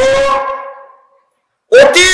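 A man preaching loudly in Bengali through a public-address system: a long, held word fades away, there is a short silence about a second in, and then his voice comes back loud.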